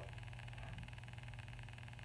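Faint room tone in a pause between speech: a steady low hum with soft hiss.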